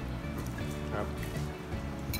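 Background music with steady held low notes, and a short voice-like sound about a second in.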